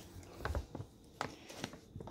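Quiet handling noises on a bed: a soft bump about half a second in, then a few light clicks and rustles.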